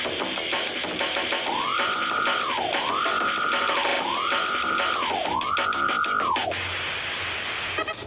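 Background music with a busy beat, over which a warning alarm tone sweeps up, holds and drops back four times, about once a second, ending well before the end. The music switches to a different, choppier section near the end.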